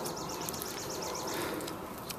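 Steady outdoor background noise with a rapid, high-pitched chirping trill of about eight chirps a second that fades out about a second and a half in.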